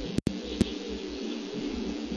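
Steady background rumble and hiss with a few sharp clicks near the start and a momentary dropout about a quarter second in, like the noisy audio of a fixed outdoor camera.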